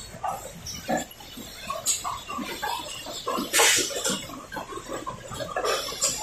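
Automatic paper cup packing machine running: irregular clattering and knocking from the conveyor and wrapping mechanism, with one short loud hiss about three and a half seconds in.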